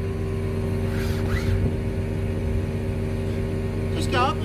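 Crane truck engine running steadily, a constant hum holding several even pitches.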